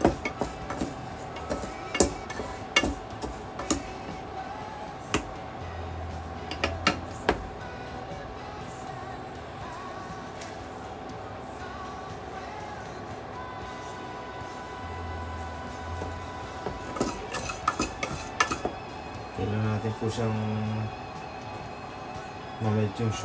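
Utensils clinking against dishes in scattered sharp clicks, a cluster in the first few seconds and another near the end, while strawberry compote is spooned onto a cake. Steady background music runs underneath.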